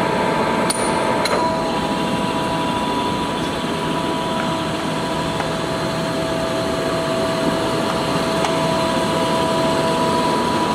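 Large Lodge & Shipley engine lathe running under power: a steady mechanical drone from its drive and gearing, with two steady whining tones. Two sharp clicks come less than a second apart, about a second in.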